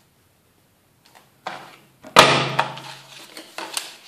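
Envelope Punch Board punch pressed down hard through two layers of paper: one sudden loud clunk about two seconds in, with a short ring fading after it. Paper rustles just before, and a few lighter clicks come near the end.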